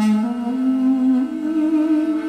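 Duduk and kamancheh playing together, a held melody note that steps up in pitch a little past the middle.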